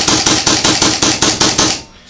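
Autococker-type Supercocker paintball marker fired rapidly on compressed gas with no paint, a fast even string of sharp pneumatic shots at about seven a second that stops shortly before the end.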